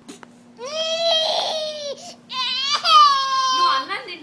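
Toddler crying while eating: two long wails, the first starting about half a second in and the second, louder one starting high and falling in pitch before it breaks off near the end.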